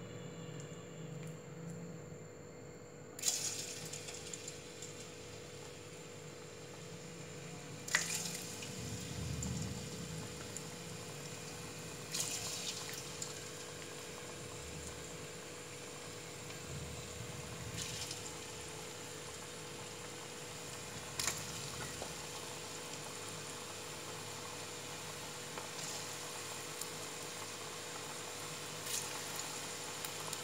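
Batter-coated cauliflower pieces deep-frying in hot oil in an aluminium kadai: a steady sizzle that starts about three seconds in, with a sharper burst now and then, about five times, as more pieces go into the oil.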